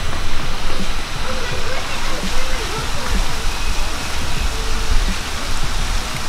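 Steady rushing background noise with a low rumble, and faint voices in the background.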